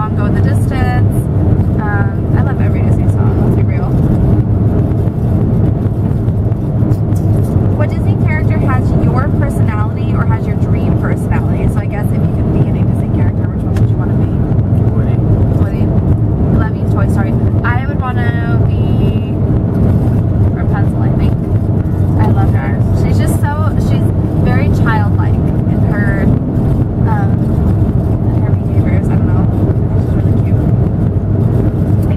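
Steady low drone of a car being driven, heard from inside the cabin.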